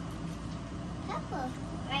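A child's brief voice, a couple of short sliding sounds and then a word near the end, over a steady low hum.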